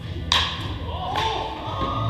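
Two sharp knocks: a loud crack about a third of a second in, then a fainter one about a second later, over background music.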